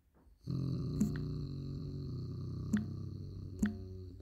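Three short taps on a phone's on-screen keyboard, heard over a steady buzzing hum that starts about half a second in and stops just after the end.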